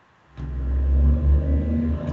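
A loud, steady low rumble that starts about a third of a second in, most likely picked up by a call participant's microphone.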